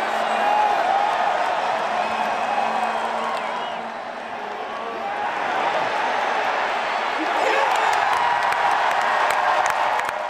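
Packed baseball stadium crowd cheering and clapping, easing off slightly midway and then swelling again near the end as the final out of the game is made.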